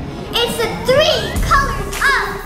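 Excited children's voices calling out over background music.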